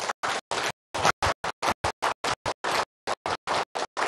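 Audience applauding, the clapping cutting in and out in choppy bursts.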